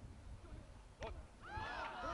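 A single sharp thud about a second in, then several players' voices breaking out in overlapping shouts and cheers from about halfway through, rising in loudness: the celebration of a goal.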